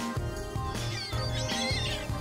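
Upbeat background music with a steady beat. From about halfway through, gulls are calling over it with high, squealing cries.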